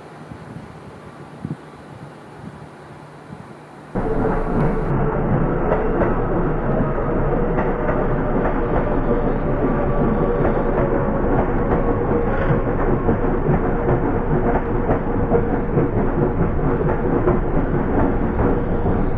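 Yellow Seibu electric commuter train running past close by: steady rolling noise of wheels on rail with a steady tone under it. It starts suddenly about four seconds in, after a quieter stretch of faint background.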